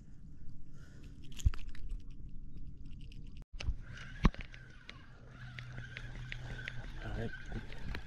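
Close handling knocks and clicks of fishing tackle near the microphone, the sharpest about four seconds in, followed by a regular ticking about four times a second over a steady faint high tone.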